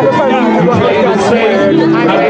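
Male rapper's voice on a handheld microphone, amplified through a concert PA over loud backing music with a beat.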